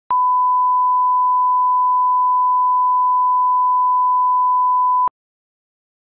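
A steady 1 kHz reference tone, the line-up test tone that goes with colour bars at the head of a video, held at one pitch for about five seconds and cutting off suddenly about a second before the end.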